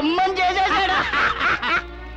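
A man laughing in a run of chuckles, stopping shortly before the end.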